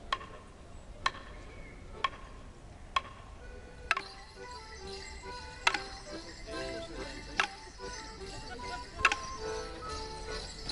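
Morris band music striking up for a border morris dance: sharp beats about once a second, slowing to roughly one every second and a half, with a tune of stepped melody notes coming in about two seconds in and growing fuller.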